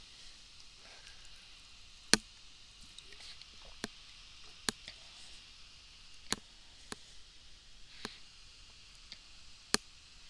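Quiet room tone broken by about seven sharp single clicks at irregular intervals, typical of a trader at a computer desk. The loudest clicks come about two seconds in and near the end.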